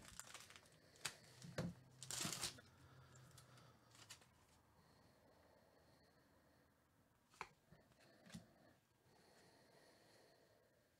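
A foil trading-card pack wrapper being torn open: a few light crinkles, then a brief rip about two seconds in. Two soft clicks of cards being handled follow near the end.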